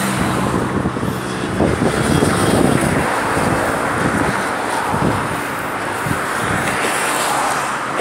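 Road traffic passing close by: a steady rush of car tyres and engines that swells and eases as vehicles go past, loudest around two to three seconds in.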